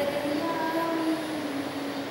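A woman singing a line of verse to demonstrate a poetic metre, holding one long note that sinks slightly in pitch.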